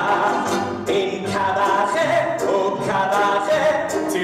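Music with several voices singing together over instrumental accompaniment.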